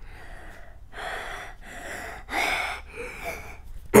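A child gasping and breathing hard through his mouth in a few breathy bursts, the loudest about two and a half seconds in, his throat cold and stinging from chewing a strong mint.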